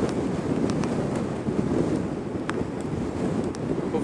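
Steady wind rush on the microphone of an Ozotech Flio+ electric scooter riding at about 55–57 km/h.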